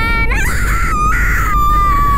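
A high-pitched, drawn-out vocal wail like crying: it slides up at the start, then is held and slowly falls, with a brief break about a second in.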